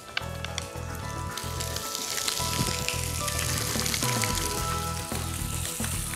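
Red mullet fillets frying in hot olive oil in a pan, a steady sizzle with fine crackles, over background music.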